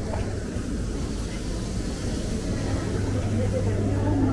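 Indoor shopping-mall food-court ambience: a steady low hum with faint voices of passers-by.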